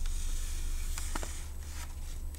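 A book's paper page being handled and starting to turn: a faint rustle with a soft tick a little over a second in, over a steady low hum.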